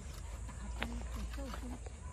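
Faint, indistinct voices over a steady low rumble. A few light taps and scrapes come from a rake working loose garden soil, the clearest just under a second in.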